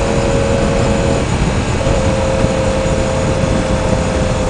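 2016 Yamaha R1's inline-four running at a steady cruise under heavy wind rush on the microphone. The engine's steady note drops out a little over a second in and comes back about half a second later.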